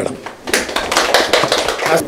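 Group of people applauding, a dense patter of hand claps starting about half a second in.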